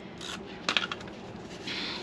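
Hands folding fabric over a cardboard cover and smoothing it down: a couple of light clicks about three quarters of a second in, then a short rubbing sound near the end.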